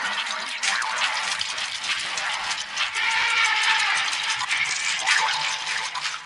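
A dense, hissy wash of overlapping, effect-processed copies of a children's cartoon soundtrack, with many short clicks running through it and no clear tune or voice.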